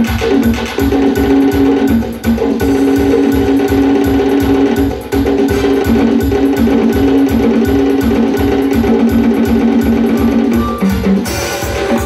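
Live band music: an electronic drum kit plays a fast, steady beat under a keyboard melody of held notes.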